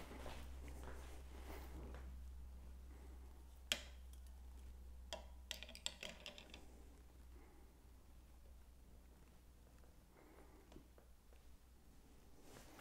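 Near silence over a low steady hum, broken by a few faint clicks and knocks as a calibration weight and its mounting hardware are handled at a bicycle crank arm: one sharper click about four seconds in, then a short cluster a second or two later.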